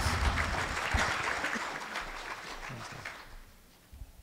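Conference audience laughing with some clapping, which dies away about three seconds in.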